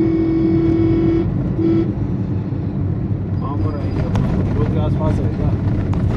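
Steady engine and road noise heard from inside a moving car's cabin, with a vehicle horn sounding for about a second at the start and a short second beep just before two seconds in. Voices and a few sharp clicks come in over the traffic noise in the second half.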